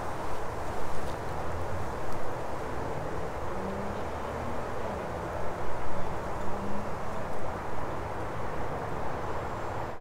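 Steady outdoor background noise with a low rumble, and a faint engine-like hum in the middle of the stretch.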